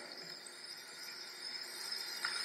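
Faint room tone with a thin, steady high-pitched whine running through it.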